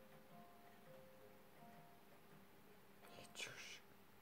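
Near silence with faint television sound, broken by a brief soft hiss about three seconds in.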